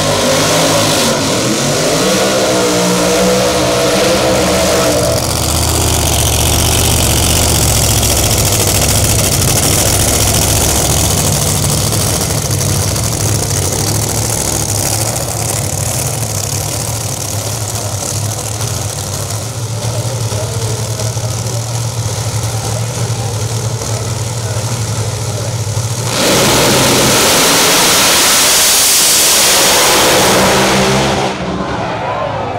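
Pro Mod drag racing cars' engines at the starting line: revving with rising pitch for the first few seconds, then a long steady low rumble while they stage. About 26 seconds in comes a sudden, much louder full-throttle launch that holds for the last few seconds.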